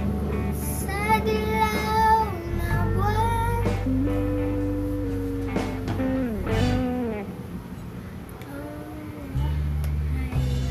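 A girl singing a slow ballad in long held, sliding notes over an acoustic guitar instrumental backing track. Her singing starts about a second in and stops about seven seconds in; the backing then goes quieter before coming back fuller just before the end.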